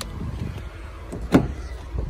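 A single sharp clunk about a second and a half in, as the 2012 Honda Civic's rear door is unlocked and its latch released, over a low rumble.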